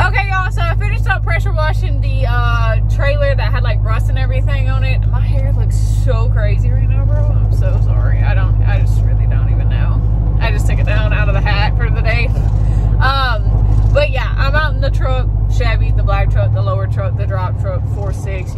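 Steady low drone of a Chevy pickup's engine and road noise heard inside the cab while driving, under a woman's voice. The drone shifts slightly near the end.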